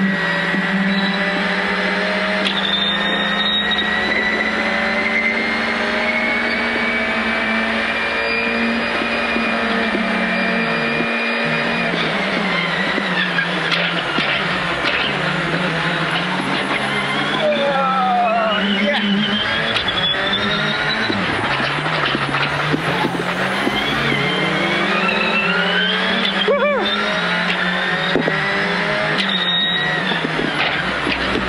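Citroen C3 R5 rally car's turbocharged four-cylinder engine driven hard, heard from inside the cabin. The revs hold high, drop about a third of the way in, then climb repeatedly through the gears. A short sharp click comes near the end.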